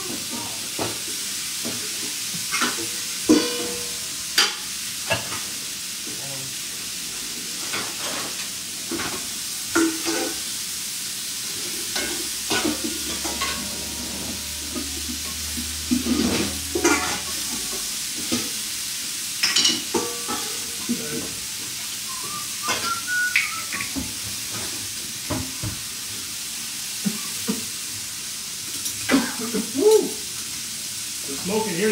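Food sizzling steadily in a hot pan, with scattered light knocks and clinks of utensils and dishes throughout.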